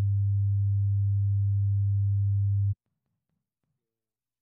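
A loud, steady, low pure test tone played through the meeting's audio system during a sound check. It cuts off suddenly a little under three seconds in.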